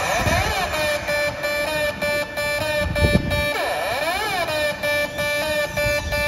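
Electronic sound effects in the dance routine's recorded music, played over the PA: steady pitched tones that swoop down and back up in pitch, with a deep falling-then-rising swoop about halfway through.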